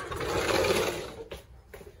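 A rapid rattling, scraping noise lasting about a second, starting suddenly and fading, followed by a couple of faint knocks.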